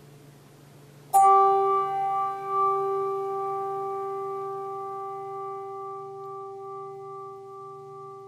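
A bell struck once about a second in, ringing with several clear tones that fade slowly: a memorial toll for one of the departed saints. A faint low hum runs underneath.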